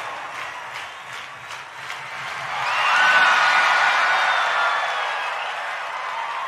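Concert audience clapping and cheering; the cheering swells to its loudest about halfway through, with a long, high held voice above it.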